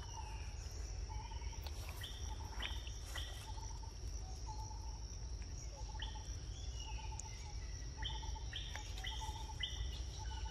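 Forest ambience: a steady high-pitched insect drone, with birds calling in short repeated notes that come in runs of a few at a time, over a low steady rumble.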